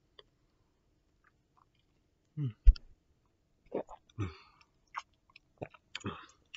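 A man tasting a pre-workout drink: a short "mm" about two and a half seconds in, followed by a sharp click, then a run of short lip smacks and swallowing sounds.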